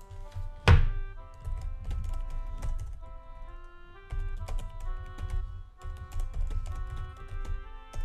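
Computer keyboard typing, a scattered run of key clicks, over steady instrumental background music. A single loud thump comes just under a second in.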